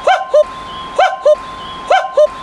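Common cuckoo calling its two-note "cu-ckoo", the second note lower than the first, repeated about once a second: two full calls and the start of a third.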